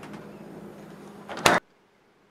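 Open refrigerator humming steadily, with a few faint clicks of bottles being handled, then a short loud knock about one and a half seconds in, after which the sound cuts off abruptly.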